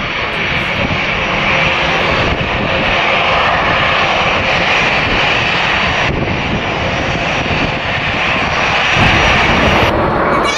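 Airbus A320-family airliner's twin turbofan engines running at taxi idle, a steady whining rush that grows a little louder near the end.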